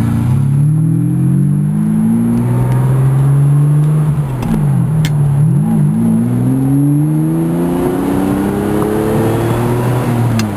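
Ferrari 550 Maranello's V12 engine heard from inside the cabin, pulling hard under acceleration. The revs climb, dip and recover a few times about halfway through as the driver shifts or lifts, then rise in one long steady pull to the end.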